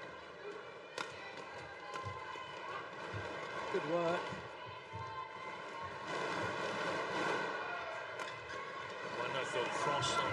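A badminton rally over steady arena crowd noise, with sharp racket strikes on the shuttlecock, the clearest about a second in. A single voice calls out about four seconds in, and the crowd noise rises between about six and eight seconds.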